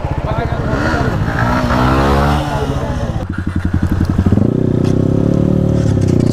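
Motorcycle engines running and being revved ahead of a burnout. The pitch rises and falls in the first half, then holds steady and louder from about four seconds in.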